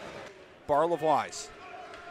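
A man's voice saying a couple of short words about half a second in, over low, steady arena background noise.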